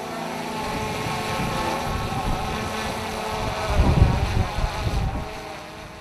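Erupting volcanic vent heard close up: a lava fountain rumbling and spattering, with wind buffeting the microphone. A louder surge of deep rumble comes about four seconds in, and the sound fades away near the end.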